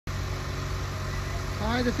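2017 Mitsubishi Lancer's four-cylinder engine idling as a steady low hum. A man starts to speak near the end.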